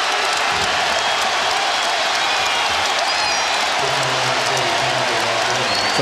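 A large home basketball-arena crowd cheering loudly and steadily after an opposing star fouls out. A low held note sounds under the noise in the second half.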